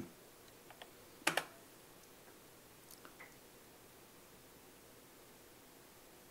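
A few computer-keyboard key clicks, the loudest a quick double click about a second in, most likely the Return key entering the RUN command. Faint key ticks come a couple of seconds later; otherwise near silence.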